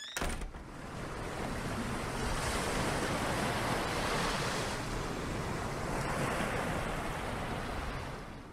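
Ocean surf sound effect: a steady rush of waves that swells in after a sharp click at the start, holds, and begins to fade near the end.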